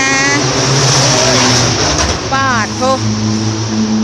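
A motor vehicle running close by, with a steady low engine hum and a loud rush of noise over the first two seconds.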